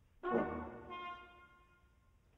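Chamber ensemble music: after a near-silent pause, a sudden loud accented chord sounds and dies away, with higher sustained notes entering about a second in and fading out.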